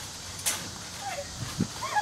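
A person bouncing on a backyard trampoline: a sharp snap about half a second in and a low thump near the end, with brief faint calls around them.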